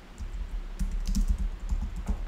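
Typing on a computer keyboard: a quick run of key clicks as a word is typed out.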